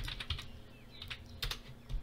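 Computer keyboard keystrokes typing a password: a quick run of key clicks at first, then a few single taps spaced about half a second apart.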